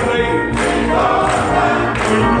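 Live gospel singing: a man's voice at the microphone with a group singing along, over a steady percussive beat struck about every three-quarters of a second.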